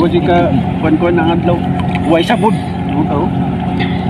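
A steady engine drone, a boat's or ship's engine running at constant speed, with indistinct voices talking over it.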